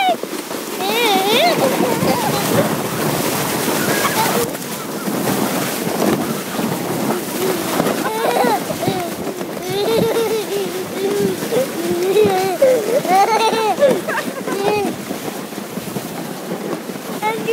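A sled sliding down a snowy slope: a steady rushing hiss of the sled on snow and wind on the phone's microphone. Over it a small child calls out again and again in high, gliding squeals and chatter.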